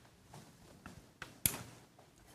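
A few faint taps and clicks of hands handling the dormakaba ED100LE door operator's housing and switch as the unit is turned on. The sharpest click is about one and a half seconds in.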